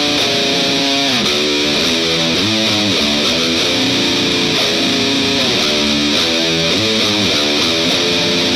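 Electric guitar (a Fender Telecaster) through an amplifier, playing a distorted metal riff. The chords change several times a second, with repeated sliding chords that drop in pitch.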